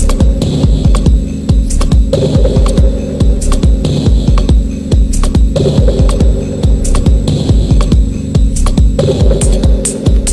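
Loud techno with a steady pulsing kick drum and a humming bass drone, ticking hi-hats above. A buzzing midrange figure comes in about every three and a half seconds: near the start, around two seconds in, five and a half seconds in, and nine seconds in.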